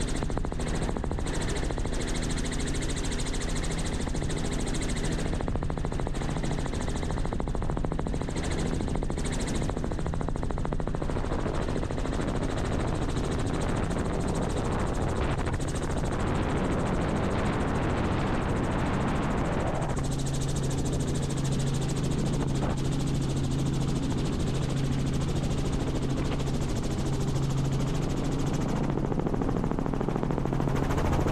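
Robinson R44 Raven II helicopter in flight, its rotor and engine making a steady drone with a fine rhythmic blade chop. The low tone grows stronger about two-thirds of the way through.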